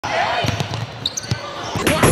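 Indoor basketball game sounds: a few sharp knocks of a basketball bouncing on a hardwood court, with raised voices echoing in the gym.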